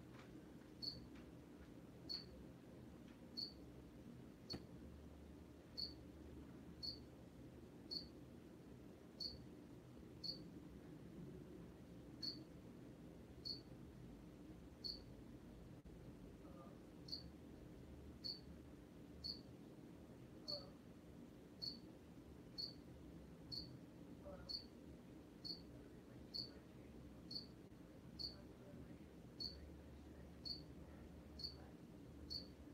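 A cricket chirping steadily about once a second, each chirp short and high-pitched, over a faint low hum.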